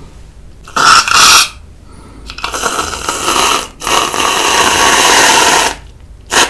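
Aerosol whipped-cream can spraying cream, in three loud hissing bursts: a short one about a second in, then two long ones from about two and a half seconds until near the end.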